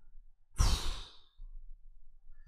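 A man's heavy sigh, one breathy exhale blown close to the microphone, starting about half a second in and lasting under a second.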